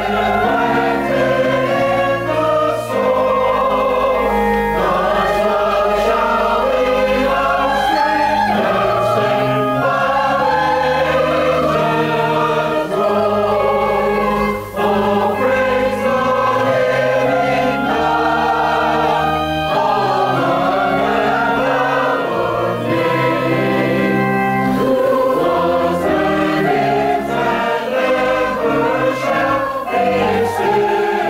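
Mixed church choir singing a choral piece of a Christmas cantata, in long held chords, over instrumental accompaniment with sustained bass notes.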